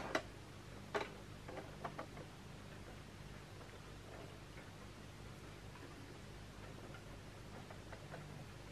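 A few light clicks and taps, the sharpest about a second in, then only faint scattered ticks over a low steady room hum.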